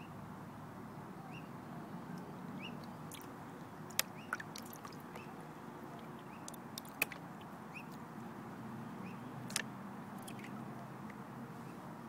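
Water sloshing and swishing in a plastic gold pan as it is swirled, with a few sharp clicks, the loudest sounds, about a third and two-thirds of the way in and again near the end.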